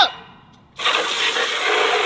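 Garden hose spray nozzle squeezed open, water spraying out in a steady hiss that starts suddenly about a second in.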